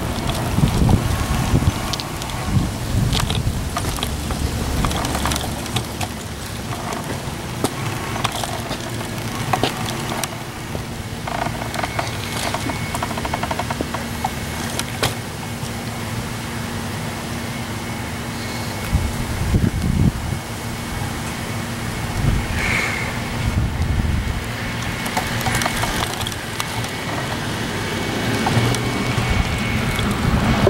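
Rumbling wind noise on the microphone with scattered handling knocks as the camera is carried along. A faint steady hum comes in about a third of the way through.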